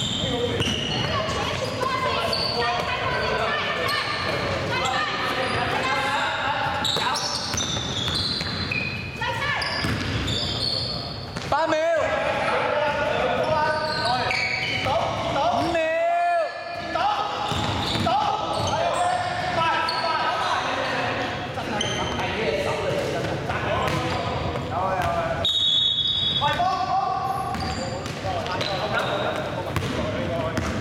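A basketball bouncing on a wooden sports-hall floor during a game, mixed with players' voices and calls echoing in the large hall.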